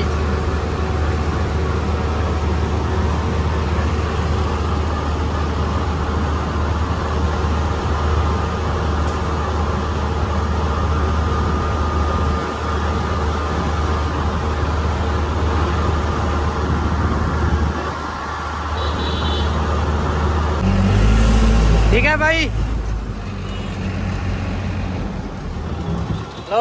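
Combine harvester's diesel engine running steadily as the machine drives along a road, a loud low hum with road and traffic noise around it. About 20 seconds in the engine note drops lower and gets louder, and soon after a short high sliding sound cuts over it.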